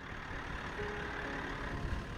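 Vehicle engine running steadily: a low rumble under an even hiss.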